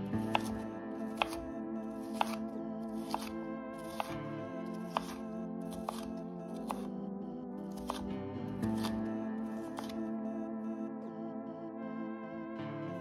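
Background music with steady sustained tones, over a chef's knife chopping onion on a bamboo cutting board: sharp knocks of the blade on the board about once a second.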